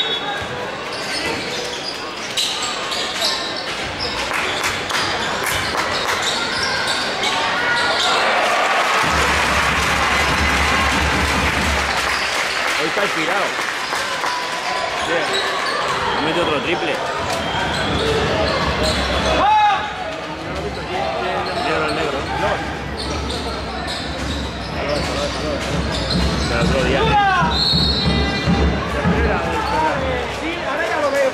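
Live sound of a basketball game on an indoor hardwood court: the ball being dribbled and bounced, with players' and spectators' voices calling out.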